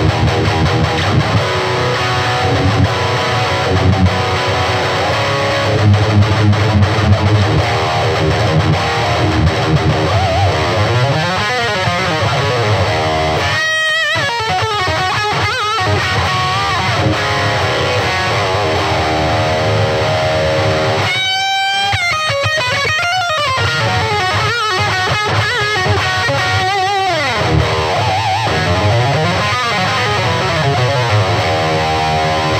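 Electric guitar played through a Peavey Vypyr 15 modelling amp set to its 6505 high-gain amp model: heavily distorted metal riffing and chords. It twice breaks into high gliding notes, about halfway and about two-thirds of the way through.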